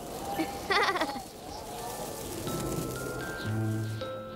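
A cartoon bear cub's short, wavering laugh about a second in, over soft background music whose low held notes come in near the end.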